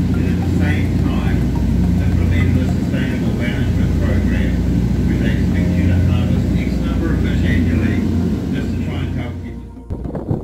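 A cruise boat's engine runs steadily with a low hum inside the cabin, with indistinct voices talking over it; it fades out in the last second.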